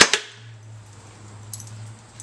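Ryobi nail gun firing once into a small piece of wood: a single sharp shot with a quick echo right at the start. A couple of faint small clicks follow about a second and a half in.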